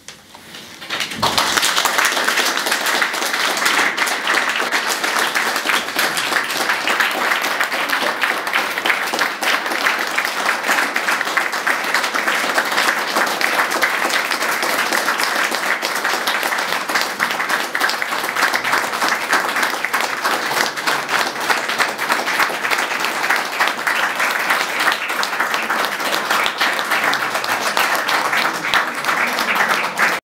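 Audience applauding at the end of a live folk performance. The applause starts about a second in and stays steady and dense throughout.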